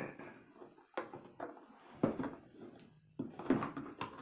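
A cardboard board-game box being opened and handled: a few short knocks and rustles as the lid comes off and the box shifts.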